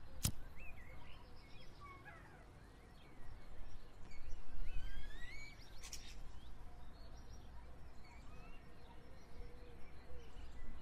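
Birds chirping in short rising and falling calls over a steady low outdoor rumble. A sharp click from a cigarette lighter being struck comes just after the start, and another sharp click about six seconds in.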